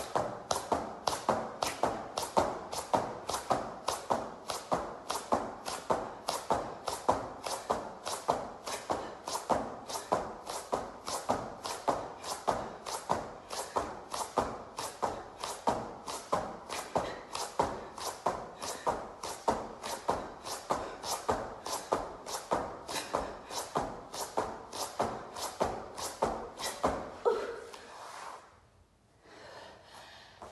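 Clapping push-ups: sharp hand claps and palms slapping down on an exercise mat in an even rhythm of about two a second, stopping a couple of seconds before the end.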